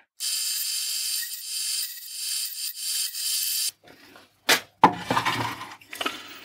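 Drill press running as it drills a 5 mm hole in a mild-steel plate: a steady whine with many high tones for about three and a half seconds, then it stops. A couple of sharp knocks and rattling follow near the end.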